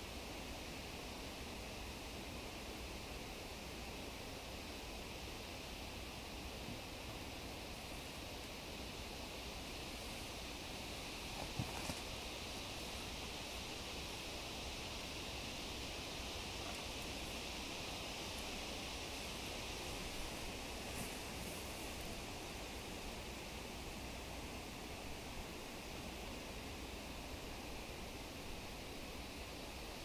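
Faint, steady hiss of wind in the leaves high in the treetops, with one brief soft click a little over eleven seconds in.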